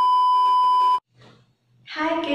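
Colour-bar test tone: one steady, high-pitched beep lasting about a second that cuts off suddenly.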